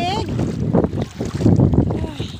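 Strong wind buffeting a phone's microphone, a loud, rough low rumble that runs throughout, with a brief vocal sound at the very start.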